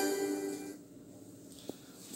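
A single plucked-string note from the textbook listening track, played through a speaker, rings out and fades within the first second. Faint room tone follows, with a small click near the end.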